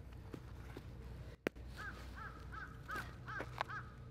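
A bird calling six times in quick succession, short arched calls about two fifths of a second apart, over faint outdoor background, with a sharp click about one and a half seconds in.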